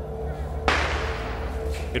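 A sudden sharp crack about two-thirds of a second in, trailing off into a hiss that fades over about a second, over a low steady musical drone.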